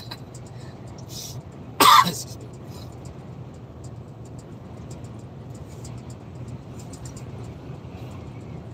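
Steady low drone of a truck cab driving on the motorway, with one loud cough about two seconds in.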